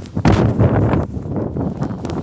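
Rough, rumbling noise on the microphone, starting suddenly just after the start and loudest for about a second, then carrying on a little quieter.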